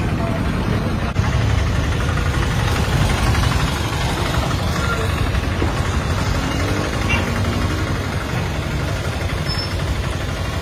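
Auto-rickshaw's single-cylinder engine running steadily close by as it creeps through a water-filled pothole, a low, even rumble throughout.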